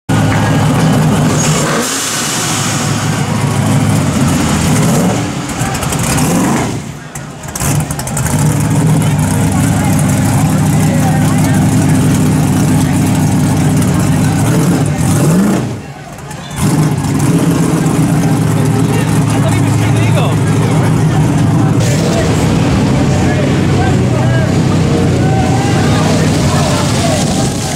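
Loud engines of modified cars running and revving, with a rise in revs about fifteen seconds in. Crowd voices underneath.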